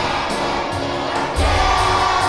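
A choir of young children singing with musical accompaniment. A stronger low bass part comes in about one and a half seconds in.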